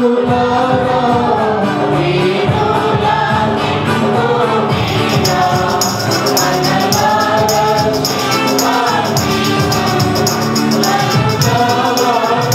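Mixed choir of men and women singing a Telugu Christian song into microphones, with a tambourine joining about halfway through and shaking a steady beat.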